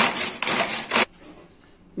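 A hand-pulled string vegetable chopper being yanked in quick strokes, its blades spinning and rattling through chopped vegetables in the plastic bowl. The pulling stops about a second in.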